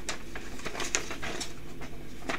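Paper envelope being torn open and a folded letter pulled out and unfolded: a quick, irregular run of crisp paper rustles and crackles.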